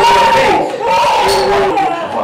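A baby crying in long, loud wails, with a woman's voice over it as she holds and soothes the child.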